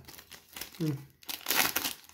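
Foil wrapper of a Bowman Chrome baseball card pack crinkling and tearing as it is pulled open by hand, in several bursts that are loudest in the second half.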